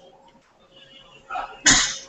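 A sneeze close to the microphone: a smaller burst, then a short loud one about a second and a half in.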